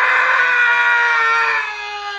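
TIE fighter engine scream: one long howl whose pitch slowly falls, fading near the end.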